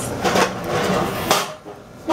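Metal café chair being set down, clattering, with one sharp knock just over a second in.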